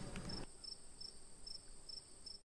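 Faint insect chirping: short, high chirps evenly repeated about two and a half times a second, over a faint steady high tone.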